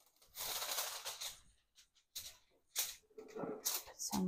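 Aluminium foil crinkling and rustling in a series of bursts as a sheet is handled and smoothed onto a table: one longer crackle about a second long, then three short ones.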